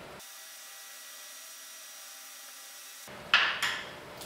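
A few seconds of faint steady hiss, then near the end a sudden loud scrape and clatter as the pastry brush and the small bowl of egg wash are put down on the worktop.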